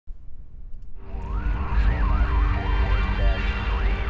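Channel intro sound design: a deep rumble, joined about a second in by warbling tones that swoop up and down, siren-like, over steady held notes.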